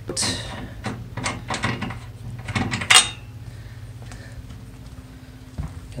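Clicks and knocks from a manual treadmill's steel frame and pull-pin incline knob being handled and moved, with the sharpest knock about three seconds in, then a quieter stretch.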